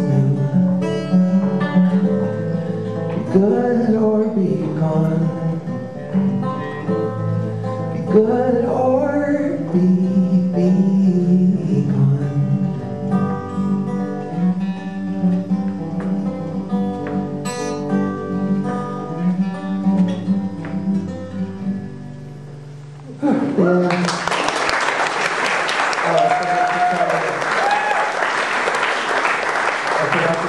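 Acoustic guitar played with a man's voice singing over it at times; the song fades out to its last notes about 22 seconds in. An audience then breaks into applause.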